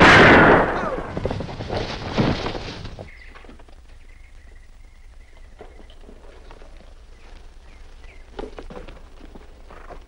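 A long rifle fires with a sudden loud crack that echoes away over about three seconds, with a second, fainter crack about two seconds in. Later come a few faint knocks.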